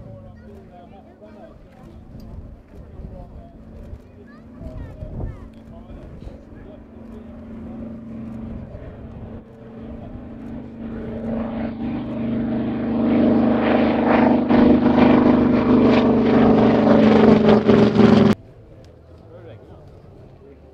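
A single radial-engined propeller warplane flying low toward and past close by, its engine note growing steadily louder until it is very loud, then cutting off suddenly near the end.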